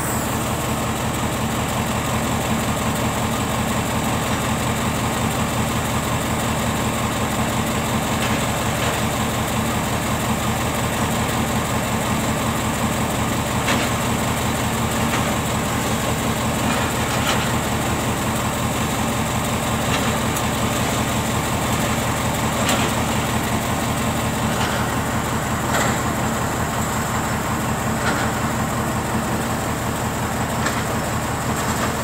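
Steady drone of heavy diesel machinery, an excavator and a dump truck running at work, with a few faint knocks scattered through.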